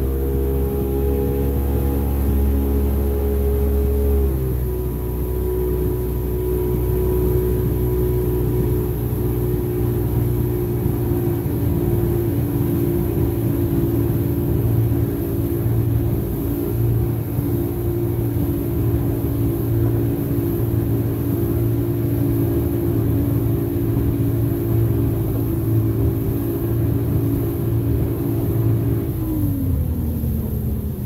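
Sea Rayder F16's Sportjet jet-drive engine running at a steady part throttle, holding the boat at about 20 mph, the slowest it stays on plane with the trim tabs up. The engine note dips slightly about four seconds in, holds steady, then falls just before the end as the throttle eases, over hull and water rumble.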